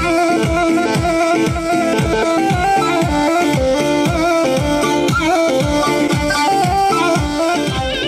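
Loud Kurdish-style folk dance music from a wedding band: an electronic keyboard plays a stepping, ornamented melody over a steady, quick drum beat.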